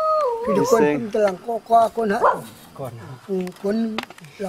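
A long, high held call that wavers and falls away a fraction of a second in, then voices talking back and forth.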